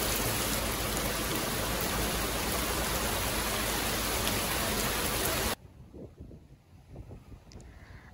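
Heavy rain pouring steadily onto a shallow pond, a dense even hiss that cuts off suddenly about two-thirds of the way through, leaving only faint background sound.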